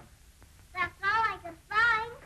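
Speech only: a young girl's high-pitched voice answering in a few drawn-out, sing-song words, starting a little under a second in and loudest near the end.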